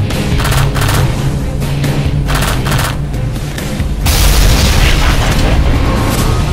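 Action sound effects over background music: two short bursts of rapid gunfire, then about four seconds in, a loud explosion boom that rings on for a couple of seconds.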